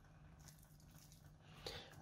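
Near silence: room tone with a faint steady low hum.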